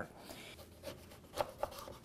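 Quiet food-preparation handling: soft rubbing, with two light knocks about a second and a half in, as of a knife on a wooden cutting board.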